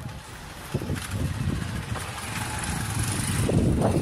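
A small motorcycle's engine running as it rides past close by, growing louder toward the end.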